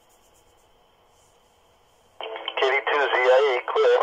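About two seconds of near silence on the channel, then an amateur operator's voice comes through a handheld transceiver's small speaker over the 2-meter FM repeater, thin and narrow-band, signing off with "clear".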